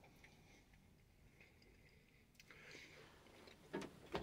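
Near silence: room tone, with a couple of faint brief sounds late on.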